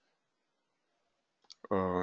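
Near silence, then a single computer mouse click about one and a half seconds in.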